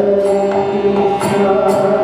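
Kirtan: a man's voice singing a devotional chant over a harmonium, with cymbal strikes keeping a steady beat about twice a second.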